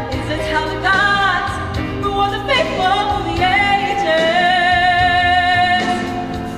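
A young woman singing solo over accompaniment music, holding long notes that waver in pitch.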